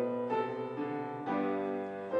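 Piano playing the opening chords of a hymn, sustained chords that change about once a second.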